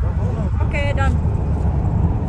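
Steady low rumble of a moving car heard inside the cabin, with a woman's voice speaking briefly about halfway through.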